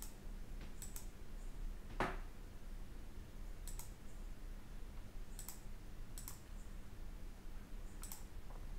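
Faint computer mouse clicks, coming in quick pairs four times, with one duller, louder thump about two seconds in, over a low steady electrical hum.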